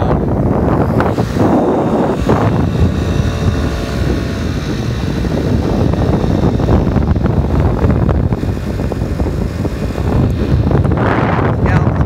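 Wind buffeting the phone's microphone on a moving moped, with the moped's small engine running underneath.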